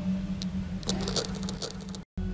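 Amplified pickup of a wall-listening contact microphone: a steady low hum, joined about halfway through by a run of short scratchy clicks as the probe is handled against the wall.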